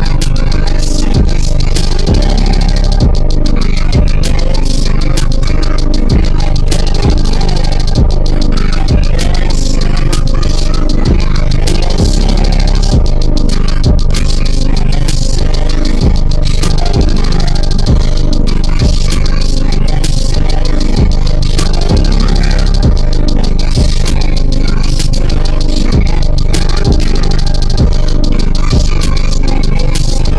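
Trap music track with deep, steady bass and regular drum hits, loud throughout.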